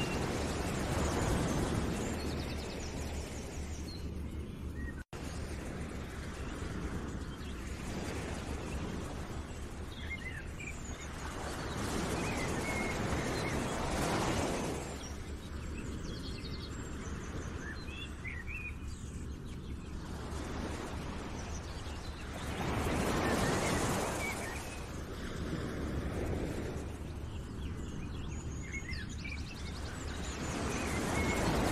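Nature ambience: small birds chirping over a steady rushing noise that swells and fades every several seconds. There is a brief dropout about five seconds in.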